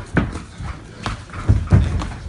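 Kickboxing strikes landing: about four dull thuds of kicks and punches on the opponent's guard and body in two seconds, the loudest two close together near the end.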